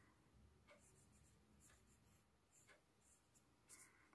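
Faint pencil strokes on drawing paper: a few short scratches about a second apart, against near silence.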